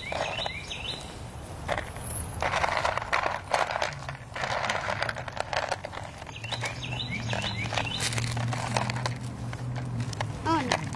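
Small plastic bags of craft beads rustling and crinkling as they are opened and picked through, with small clicks, while songbirds chirp near the start and again about two-thirds through. A low steady hum comes in about four seconds in.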